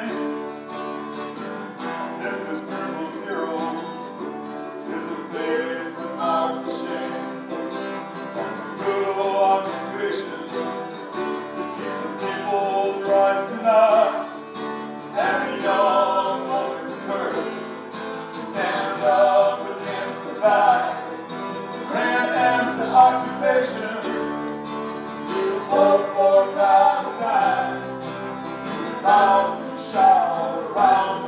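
Live acoustic folk-bluegrass band playing a song: strummed acoustic guitars, mandolin, accordion and upright bass, with voices singing over them.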